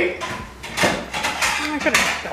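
A kitchen cabinet door being opened and a plate taken out, giving a few sharp knocks and clacks.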